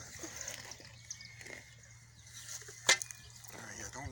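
Faint digging sounds as a small shovel cuts a plug of grassy sod, with one sharp knock about three seconds in.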